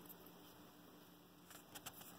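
Near silence: room tone with a faint steady hum and a few faint clicks near the end.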